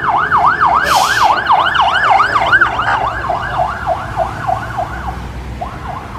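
An emergency vehicle's siren in a fast yelp, its pitch sweeping up and down about three times a second, loud at first and fading away over the last two seconds. A low rumble of street traffic runs underneath.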